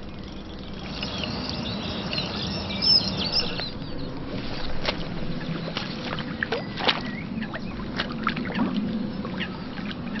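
Small birds chirping and twittering, busiest in the first few seconds, followed by a scatter of short, sharp sounds.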